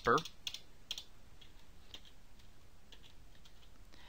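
Computer keyboard typing: a few faint, irregularly spaced keystrokes as a word is typed in.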